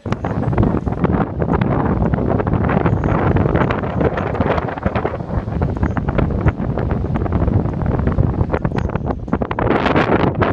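Strong wind buffeting the microphone: a loud, gusty rumble that starts abruptly and stays heavy throughout.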